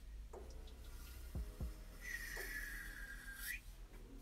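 Felt-tip marker dragging across paper: one faint squeaky stroke about a second and a half long near the middle, after a few soft taps of the pen.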